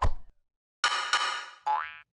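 Cartoon-style sound effects for an animated logo. A sudden thump comes first, then about a second in a ringing twang of many tones lasts just under a second, and a short rising whistle follows near the end.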